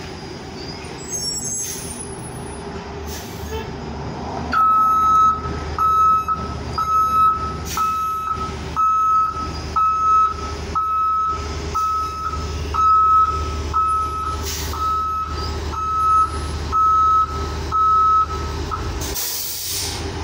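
A school bus engine running, with its reversing alarm beeping at one steady pitch, a little faster than once a second, starting about four seconds in and stopping near the end. A short sharp hiss of air, typical of an air brake, follows the last beep.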